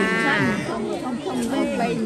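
Several people talking over one another, one voice rising high in an exclamation near the start.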